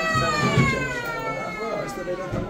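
A long, high wailing cry that slowly falls in pitch, fading out near the end, with lower voices underneath.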